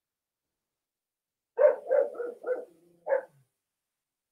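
A dog barking: four quick barks, then one more about half a second later.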